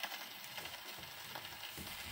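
Surface noise of a 1928 Victor shellac 78 rpm record playing on an Orthophonic Victrola: an even crackle and hiss as the needle runs in the lead-in groove, set off by the needle landing on the disc at the very start.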